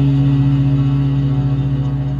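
Warwick electric bass holding one long sustained note with a fast, slight waver in its loudness.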